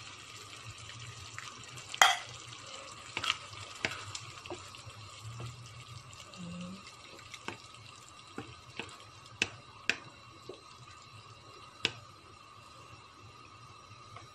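Tomato sauce coming to the boil in a frying pan while a spoon stirs it, with scattered sharp knocks and pops over a faint steady hiss. The loudest knock comes about two seconds in.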